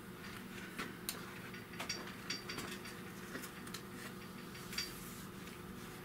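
Faint scattered clicks and light handling noises as vinyl is pressed down and folded over a panel edge by hand, over a steady low hum.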